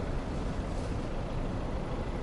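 Steady low rumble of distant city traffic, with no distinct events standing out.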